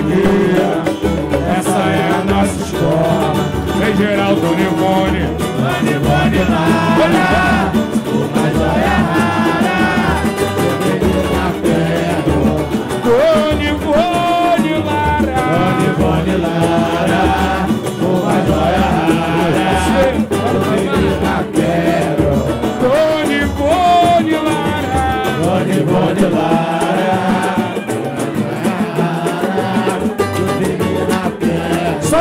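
Live samba played by a roda: cavaquinho and acoustic guitars over pandeiro and a deep hand drum keeping a steady beat.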